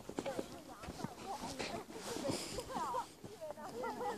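Indistinct chatter of several people's voices overlapping, with a few short knocks among them.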